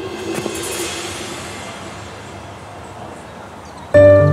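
Metal frame and lid of a street-vendor cart clattering and scraping as they are handled: a sharp clatter about half a second in, trailing off into a fading metallic hiss.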